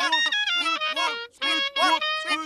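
A short snippet of cartoon audio chopped into a fast loop. The same pitched, voice-like phrase repeats about once a second, with brief gaps between repeats.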